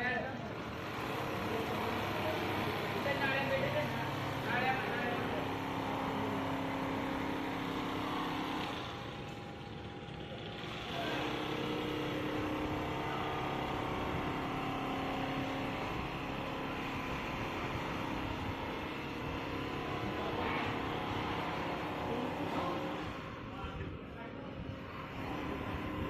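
Richpeace computerised single-needle quilting machine running, its needle head stitching through a quilt as it travels on the gantry: a steady mechanical running sound with a few held tones, easing briefly about ten seconds in.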